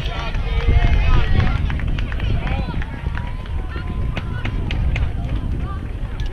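Several voices of players and spectators calling and shouting across an outdoor baseball field, one call drawn out for a couple of seconds midway, over a low wind rumble on the microphone and scattered sharp claps or clicks.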